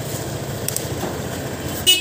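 Honda PCX 150 scooter's stock horn giving a short, loud beep near the end, over a steady low hum.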